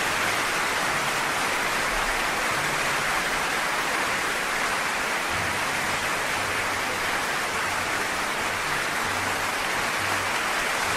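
Audience applauding at the end of a song: dense, steady clapping.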